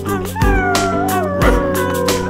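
Howling voices in a song: a long, held howl that slides slowly down in pitch, over a music track with a steady bass and a kick drum about once a second.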